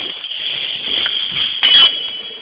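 Handling noise as the camera is moved or covered: rustling with light clinks over a steady high hiss, and a louder rustle near the end.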